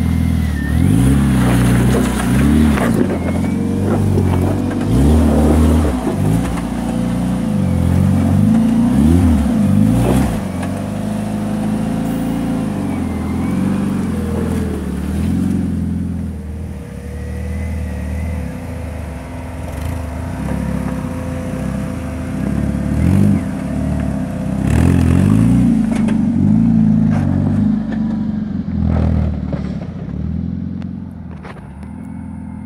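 Jeep Wrangler YJ's 2.5-litre four-cylinder engine revving up and down repeatedly in short rises and falls under off-road load. It settles to a steadier, lower run for several seconds past the middle, then revs again near the end.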